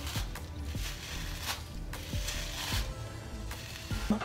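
Hairbrush bristles scraping over tightly pulled-back natural hair in short, uneven strokes, about two a second, as the hair is brushed sleek into a ponytail.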